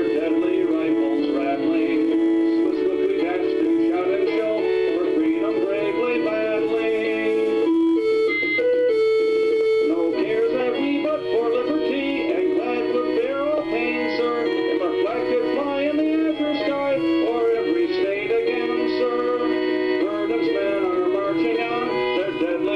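A man singing a Civil War song over instrumental backing music with held chords; the voice drops out briefly about eight seconds in while the backing carries on.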